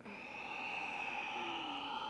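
A woman's long, audible exhale through an open mouth, a breathy "haah" sigh that starts suddenly and holds steady.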